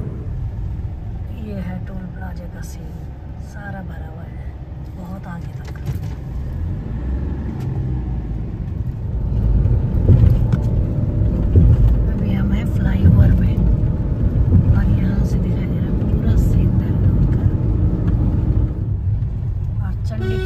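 Road and engine noise inside a moving car's cabin: a steady low rumble that grows louder about halfway through.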